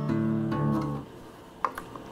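Solid-birch Stella acoustic guitar chord ringing, strummed again about half a second in and dying away soon after. A light click follows near the end.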